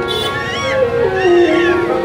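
Bengali raga kirtan music: a harmonium sustains notes under a melody that slides up and down in pitch, stepping down near the middle.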